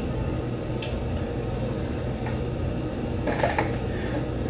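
A few light brush strokes through a long straight human-hair wig, the clearest about three and a half seconds in, over a steady low hum.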